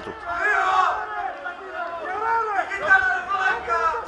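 A group of men's voices shouting loudly, several at once and overlapping, with long held calls.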